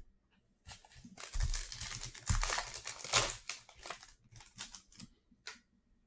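A foil trading-card pack being torn open and its wrapper crinkled: a dense run of crackling for about three seconds, then a few lighter crinkles as the cards come out.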